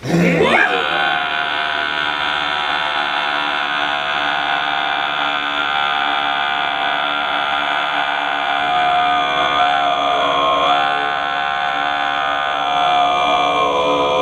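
Two men chanting together in long, sustained drone-like notes, their voices holding steady pitches with a rich stack of overtones.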